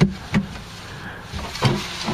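Plywood slide-out tray, not yet fitted with rollers, sliding by hand along its tracks, with a sharp knock at the start, another about a third of a second later, and a third near the end.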